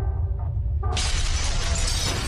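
Animated-intro sound effect: a deep steady rumble, then about a second in a sudden loud crash of shattering, breaking debris that keeps on going.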